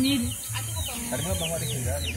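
Many short, high, quickly falling bird chirps, repeated over and over, above the murmur of people talking.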